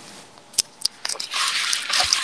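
A few short clicks over a voice-chat microphone, then a breathy hiss lasting about a second before speech resumes.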